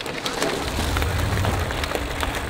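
Mountain bike tyres rolling over a gravel drive, a steady gritty hiss with small scattered clicks, over a low rumble of wind on the microphone.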